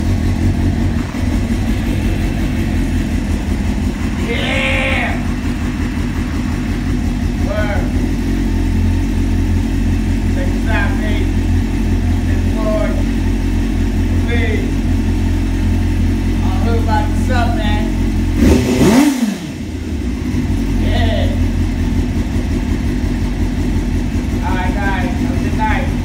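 Suzuki GSX-R sport bike's inline-four engine idling steadily, with one quick throttle blip a little past the middle that rises and falls in pitch.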